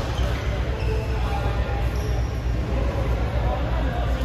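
Badminton doubles rally on an indoor court: a few sharp racket strikes on the shuttlecock and footfalls on the court floor, over a steady low rumble and faint voices in the hall.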